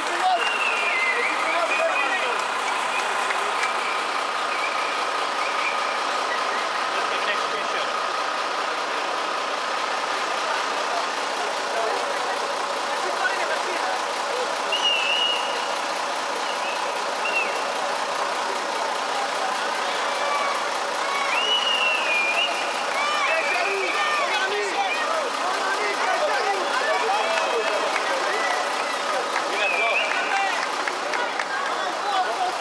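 Voices of a crowd of football fans, talking and calling out without clear words, over a steady hum.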